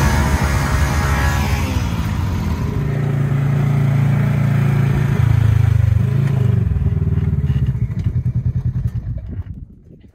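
ATV engine running; its pitch drops as it slows in the first couple of seconds, then holds a low, steady note. Near the end the sound breaks into separate regular pulses and fades away.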